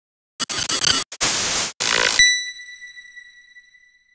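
Logo intro sound effect: three short, loud blasts of hissing noise, then a single high ringing tone that fades away over about two seconds.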